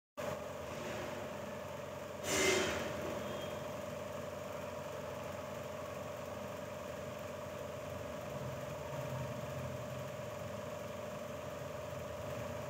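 A motor running steadily: a constant hum with one held tone, broken by a brief louder rush of noise about two and a half seconds in.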